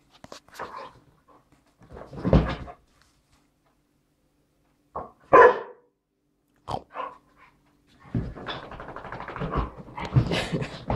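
Two dogs play-fighting: short barks a couple of seconds in and the loudest about five seconds in, then a stretch of continuous scuffling noise near the end.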